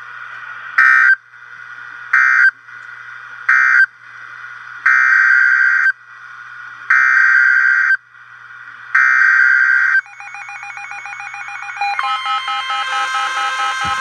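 NOAA weather radio data bursts: three short, harsh digital screeches and then three longer ones about two seconds apart, the coded end-of-message and header that announce a new warning. From about ten seconds in, steady electronic alert tones from the weather radios start up and grow louder.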